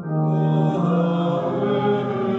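A sung Mass response: voices singing a slow chant-like melody over an organ, coming in just after a short organ introduction.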